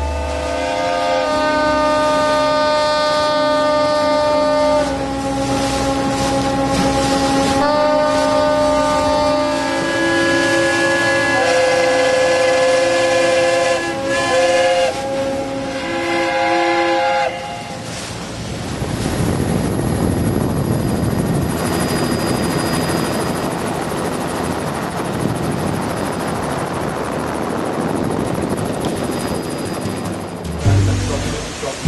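Ships' horns and steam whistles blowing a salute: several held tones sounding together as chords, overlapping and changing every few seconds, for about the first seventeen seconds. Then a steady rushing noise takes over.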